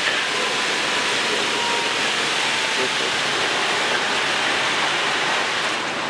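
Fire hose streams spraying water onto the burning, collapsed wooden wreckage of a building, a steady rushing hiss.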